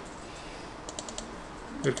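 A handful of faint, sharp clicks from a computer mouse, about a second in, as a program file is double-clicked to open it.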